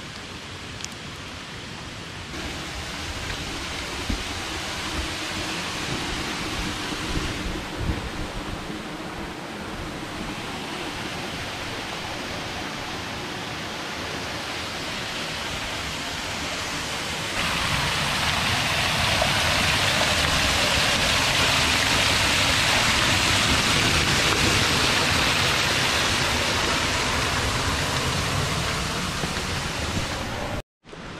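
Steady hiss of rain and running water in wet woodland, growing louder about two seconds in and louder still from about seventeen seconds, with a few faint knocks in the first half.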